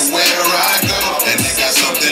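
Hip hop track with rapping, played loud through a club sound system, its deep bass kicks sliding down in pitch.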